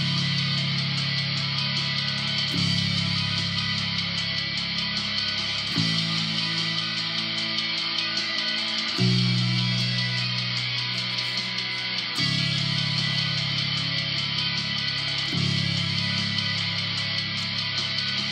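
Ibanez Soundgear electric bass in drop C# tuning, played through a Peavey Max 115 amp along with a distorted melodic metalcore recording: long held notes and chords changing about every three seconds. Picked up by an iPod Touch microphone, so the sound is rough.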